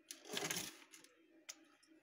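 A puppy's claws scratching and scrabbling on wood paneling as it paws at a hanging window-shade cord, one short burst near the start, then a single sharp click about a second and a half in.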